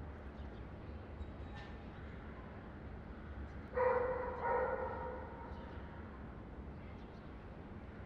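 A single pitched animal call, about a second long, rising out of a steady low background rumble about four seconds in.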